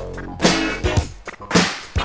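1980s funk song's instrumental intro: a drum beat with two sharp, cracking backbeat hits about a second apart over deep kick drum and bass.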